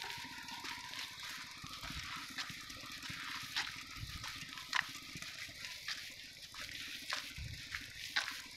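Footsteps crunching on a dry dirt path, about two steps a second, over a steady outdoor hiss, with a few low thumps from the phone being carried.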